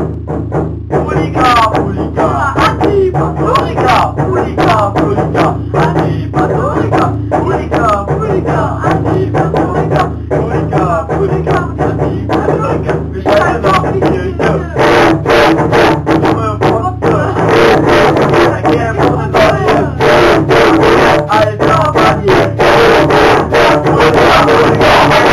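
Amateur screamo song: screamed and shouted vocals over a strummed guitar, growing louder and denser in the second half.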